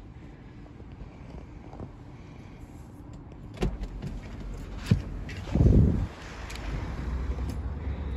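Car door being opened: two sharp latch clicks about three and a half and five seconds in, then a heavier low thump. After that a steady low rumble from outside comes in through the open door.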